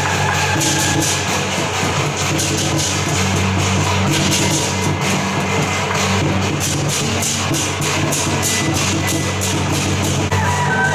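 Lion dance percussion band playing: a drum with clashing cymbals and gongs in a fast, dense, unbroken rhythm.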